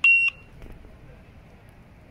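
Motorola price-checker kiosk's barcode scanner giving one short, high beep as it reads a product's barcode.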